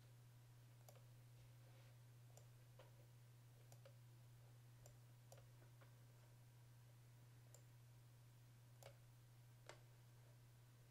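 Faint, scattered clicks of a computer mouse, about a dozen, with two slightly louder ones near the end, over a steady low electrical hum in an otherwise near-silent room.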